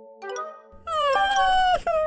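Background music with held notes; about a second in, an animated cartoon character gives a short, high-pitched wordless vocal sound that dips slightly in pitch.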